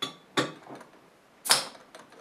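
A beer bottle being opened: a few small clicks of the opener on the cap, then a brief sharp hiss of escaping carbonation about a second and a half in.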